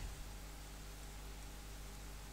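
Faint steady hiss with a low hum underneath: room tone with no distinct sound.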